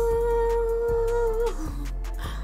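A woman humming one long held note that ends about a second and a half in, followed by a short lower note, over background beat music with a deep steady bass and regular ticking hi-hats.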